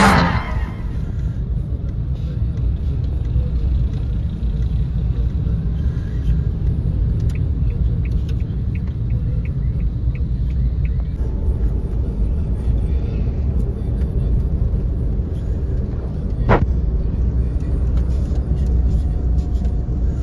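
Steady low rumble of engine and road noise inside a moving vehicle's cabin. A single sharp click or knock sounds a few seconds before the end.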